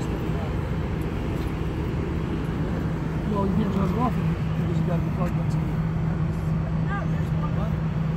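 Steady low engine rumble of idling vehicles, with a steady low hum that comes in about four seconds in and holds. Faint voices and a laugh sit over it.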